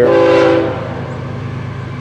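Florida East Coast Railway diesel locomotive's air horn sounding for a grade crossing. A chord that cuts off under a second in, then the steady low rumble of the approaching diesel locomotives.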